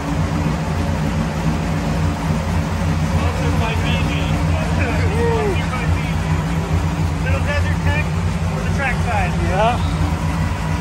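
A supercharged Cadillac CTS-V drift car's engine idling steadily while its cooling system is bled of trapped air through a coolant funnel, to cure a cooling problem. Voices talk in the background now and then.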